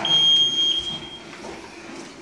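A single high-pitched electronic beep, held steady for a little over a second and then cut off, over low room noise.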